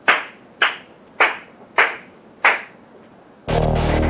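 One person clapping slowly by hand: five single claps about 0.6 s apart, a sarcastic slow applause. Background music comes in near the end.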